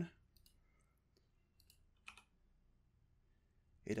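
A few faint computer mouse clicks in near quiet, the loudest about two seconds in.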